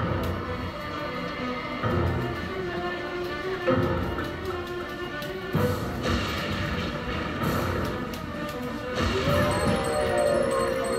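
Video slot machine game audio during free spins: a spooky music loop with sudden thuds as the reels spin and stop. About halfway through comes a crash as a lightning effect strikes across the reels.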